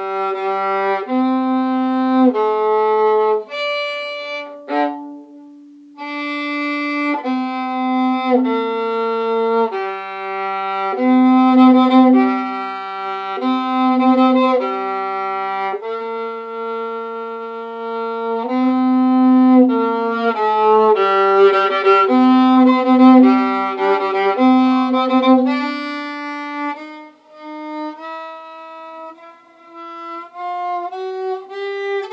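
Solo viola, bowed, playing a cello part: mostly long held notes, with a brief break about five seconds in and a rising run of short notes near the end.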